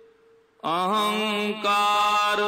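Sikh Gurbani kirtan: a held sung note dies away into a brief pause, then the singing starts again abruptly about half a second in.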